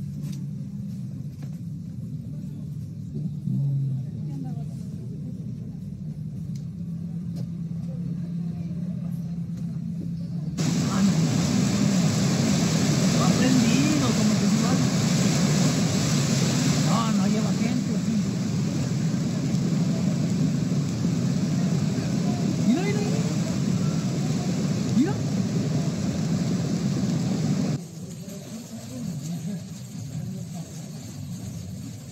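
A loud steady rush of water noise, the roar of floodwater around a car swept along at night, with voices heard over it; it starts abruptly about ten seconds in and cuts off suddenly near the end. Before it there is a quieter low, steady hum.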